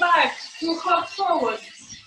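A person's voice in three short pitched phrases whose pitch glides up and down, dying away near the end.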